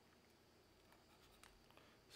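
Near silence, with faint scratches and taps of a stylus writing on a digital screen.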